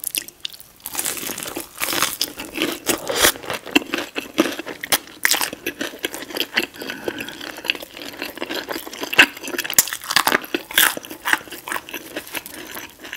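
Close-miked biting and chewing of a crispy fried chicken tender from Raising Cane's, with dense, irregular crunches of the fried breading.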